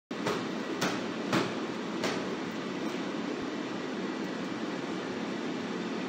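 Steady hiss of room noise, with four sharp knocks from a gloved sparring pair in the first two seconds, roughly half a second apart.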